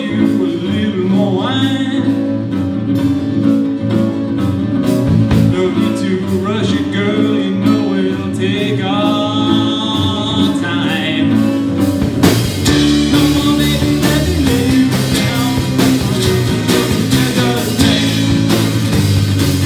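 A small band playing live: two acoustic guitars, bass guitar and a drum kit with a steady hi-hat, and a voice singing over them. About twelve seconds in the singing stops and the band plays on more fully, with heavier drums.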